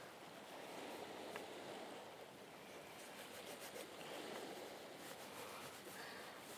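Faint, steady outdoor shoreline ambience: an even low wash of surf and wind with no distinct events.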